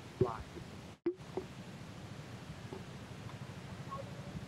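A man sings the word "fly", then the sound cuts out briefly and a low steady traffic rumble follows, with motorcycles idling at a stop.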